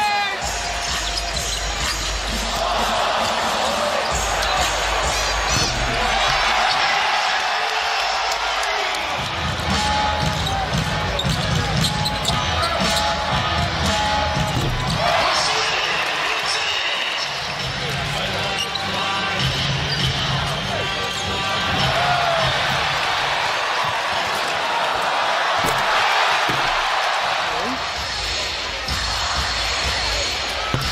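Basketball game play in an arena: a steady crowd din, with the ball bouncing on the court.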